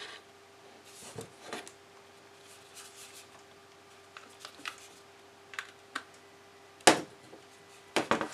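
Handling noise: light plastic clicks and scrapes as a USB cable plug is fitted into the plastic base of a disco ball light, with one louder, sharp click about seven seconds in.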